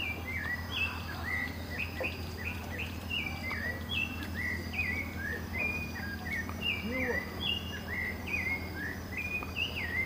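Several birds calling in the forest canopy: a continuous run of short, high chirped notes, several a second and overlapping, over a steady low hum.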